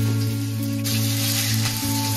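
Curry leaves and grated aromatics sizzling in hot oil in a kadai, the sizzle growing louder about a second in.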